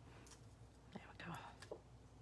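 Near silence: room tone with a faint, brief whispered murmur about a second in.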